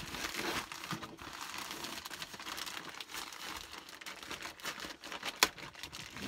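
Plastic poly mailer bag crinkling continuously as the jeans inside are pressed down and folded to push the air out, with one sharp crackle about five and a half seconds in.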